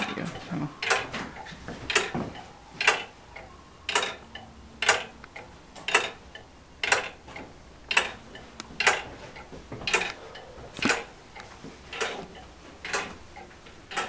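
Church turret clock movement ticking: sharp, regular mechanical ticks about once a second.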